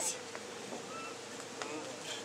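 A steady buzzing hum held at one pitch, over faint background noise.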